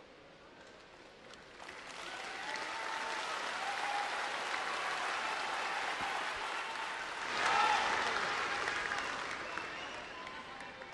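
Audience applauding with a few voices calling out, starting quietly and building from about two seconds in, loudest near the three-quarter mark, then tapering off.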